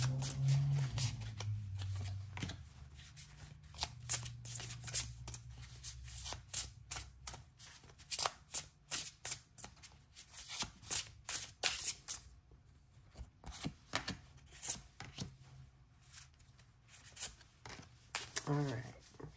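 A tarot deck being shuffled by hand, a fast run of light card clicks and slaps with a short lull past the middle. Near the end, cards are dealt down onto a wooden tabletop.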